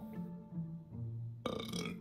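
Background music with a bouncy line of low bass notes and a few held higher tones, with a short burst of noise about one and a half seconds in, typical of an edited transition sound effect.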